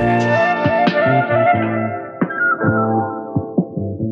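Instrumental hip-hop beat in a breakdown. The deep bass drops out and the sound grows steadily duller as the high end is cut away, leaving a wavering melodic lead over light, scattered drum hits.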